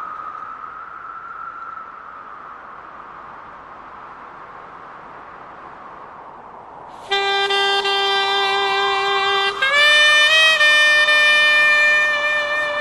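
A band's wind instrument starts about seven seconds in, after steady background noise. It plays a long held note, then moves up to a higher held note with a small bend in pitch.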